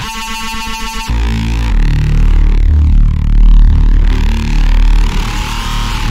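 Serum software synthesizer bass preset being played. First comes a bright, buzzy note lasting about a second. After it, from about two seconds in, a deep, heavy bass note holds with a sweeping, shifting upper tone.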